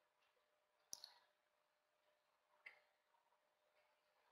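Near silence with faint computer mouse clicks: a quick double click about a second in, then a single click near three seconds.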